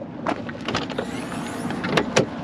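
A string of light clicks and taps as a hand works the rear cargo door of a Ford Excursion, over a steady low rumble.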